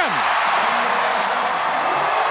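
Arena crowd cheering steadily after a winning point, with no break in the noise.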